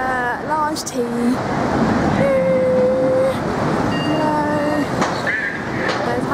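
A woman's voice, with one long held note about two seconds in, over a steady wash of street traffic noise.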